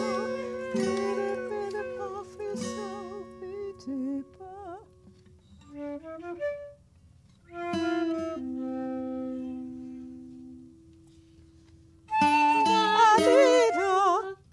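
Improvised acoustic music: a flute plays long, wavering notes with vibrato over plucked acoustic guitar chords. It thins to a few sparse held notes in the middle and grows louder again about two seconds before the end.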